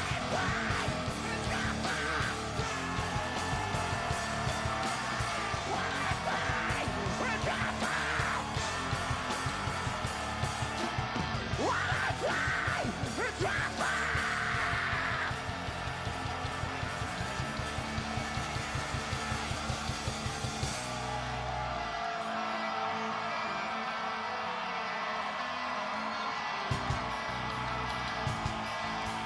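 Rock band playing live, with distorted electric guitars, drums and yelled vocals. The heavy low end drops out about three-quarters of the way through while the guitar carries on.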